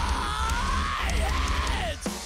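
Metalcore music: a long held scream over a steady low bass and guitars, sliding down in pitch near the end.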